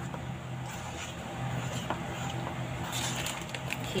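A metal spoon stirring thick cookie dough with chocolate chips in a large bowl, with a few light clicks, over a steady low hum of background noise.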